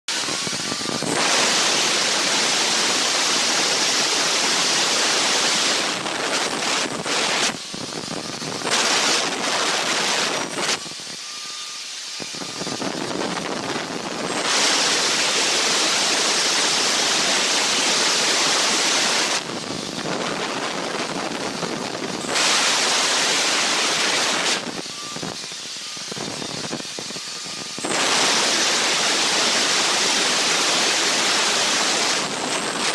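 Handheld electric marble cutter cutting through a granite countertop slab, a loud hissing grind that comes in several long spells of a few seconds each, with quieter stretches between them where the cut eases off.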